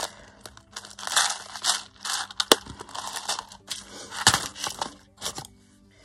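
Clear plastic packet crinkling and rustling as it is handled, in irregular bursts, with one sharp click about two and a half seconds in.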